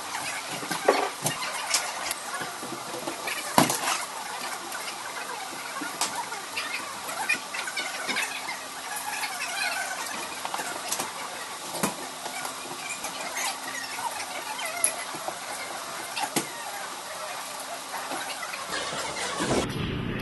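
Scattered knocks and clicks of equipment being handled, the loudest about three and a half seconds in, over steady room noise and a faint hum.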